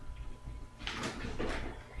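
Handling noises as a plastic shampoo bottle is picked up: a short stretch of rubbing and light knocks, a second or so in.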